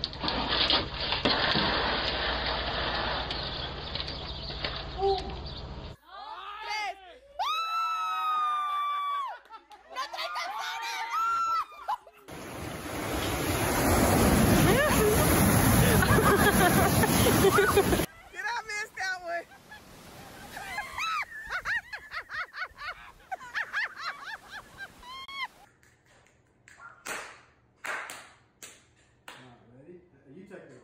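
Loud rushing and splashing of churning water for about six seconds, between stretches of high cries that glide up and down in pitch. It opens with a steady hiss and ends with a few sharp clicks.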